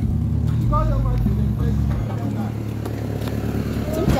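A car engine running at idle as a steady low hum, with a short voice call about a second in.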